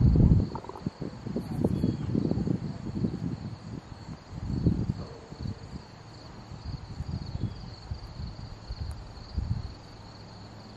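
Wind buffeting the microphone in irregular low gusts, strongest in the first half, over a steady high-pitched chorus of insects.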